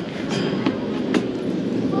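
Mountain coaster machinery on its metal rail: a steady mechanical rumble with a few sharp clicks.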